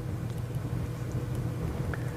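Steady low hum with a faint even hiss: room tone, with no distinct event standing out.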